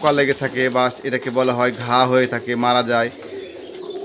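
Domestic pigeons cooing in a loft, under a man's voice that talks through most of the stretch and stops about three seconds in.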